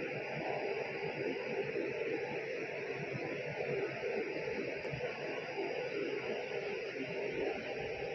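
Steady lab room noise: an even hiss with a low hum underneath, unchanging and without distinct knocks or clicks.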